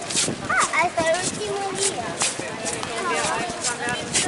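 Footsteps on stone paving at a walking pace, about two steps a second, with indistinct chatter of passers-by.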